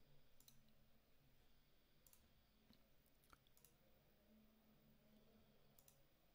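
Near silence, with a handful of faint computer mouse clicks spread through it.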